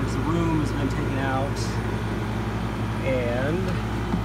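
Gutted window air conditioner running as a homemade glycol chiller, a steady low hum from its compressor and fan while it cools the water in the cooler.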